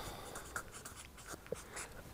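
Felt-tip marker writing a word on flip-chart paper: a quick series of short, faint strokes of the pen tip scratching across the paper.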